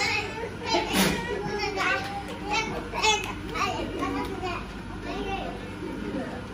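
Children's voices chattering, high-pitched, over a faint steady low hum.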